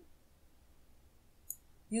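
Near silence with a single short, faint click about one and a half seconds in.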